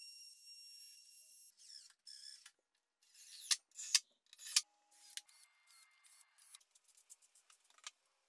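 Makita cordless trim router running with a steady high whine that stops about a second and a half in. It is followed by a string of short clicks, scrapes and taps from handling tools, hardware and wood.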